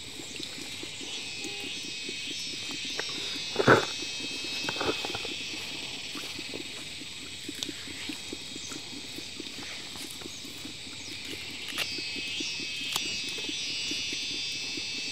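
A steady high chirring chorus of insects, with faint crackling and snapping of leafy greens being stripped by hand. One brief, louder sound breaks in about four seconds in.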